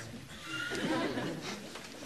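Faint murmur of voices from a sitcom studio audience, heard between lines of dialogue.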